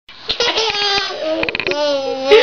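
Ten-month-old baby laughing in short bursts, ending in one longer held note near the end.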